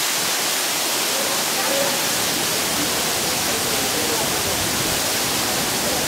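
Waterfall crashing down onto rock: a steady, unbroken rush of falling water.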